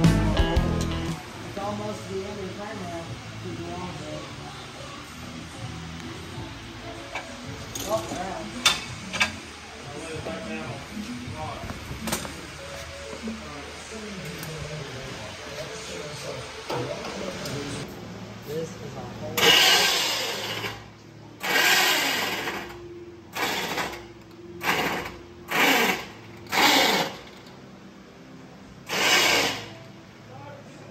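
Pressure washer spraying in about seven short bursts of hiss, each a second or less, in the second half. Before that the sound is quieter, with background music.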